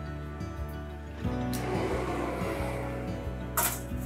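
Background music. Over it a rushing hiss runs through the middle, and near the end comes a sharp metal clank as a steel tray of pork is slid onto the rack of a combi oven.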